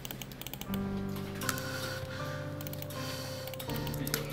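Fast typing on a computer keyboard, quick key clicks under a background music track of long held notes that grows louder about a second in.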